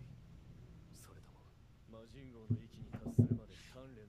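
Quiet dialogue from the anime episode playing in the background: a character's voice speaks one line in the second half, after a near-quiet first two seconds.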